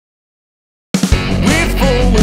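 Dead silence, then about a second in a rock song kicks in suddenly at full level: drums played on an electronic kit, with bass and guitar.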